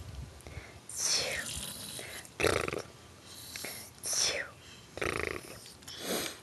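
A baby making short breathy, gruff vocal sounds, about five separate bursts roughly a second apart.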